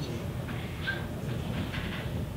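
Low, steady rumble of room noise in a large hall, with a few faint, brief sounds above it.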